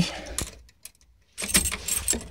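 Clicking and rustling handling noise from a handheld phone being moved, with a jangle like keys. It drops out about half a second in and comes back loudly near 1.4 s.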